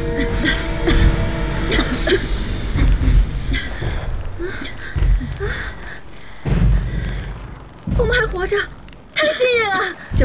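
Film-soundtrack bomb explosions: a series of heavy booms, with big ones at about five, six and a half and eight seconds, under dramatic music. A woman's voice comes in near the end.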